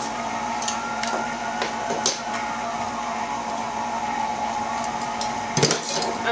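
Electric stand mixer with its whisk attachment running steadily on low, mixing cake batter, with a few light clicks in the first couple of seconds.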